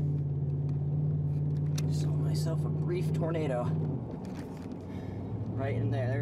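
A vehicle engine running inside the cab with a steady low drone that drops away about four seconds in and returns near the end, with a man's voice calling out over it.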